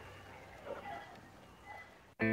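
A quiet pause in the recording: a faint steady low hum, with a few faint, brief sounds about two-thirds of a second in and again near the end.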